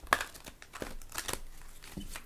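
Oracle cards being shuffled and handled: a quick run of crisp card snaps and rustles, the sharpest just after the start and a cluster of them in the second half.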